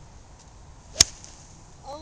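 Golf club striking a ball off the tee: a single sharp crack of impact about a second in.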